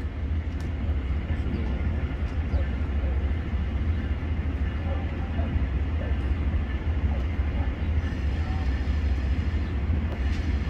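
Steady low rumble of train equipment in a rail yard as a train moves slowly down the track, with a faint high whine joining near the end.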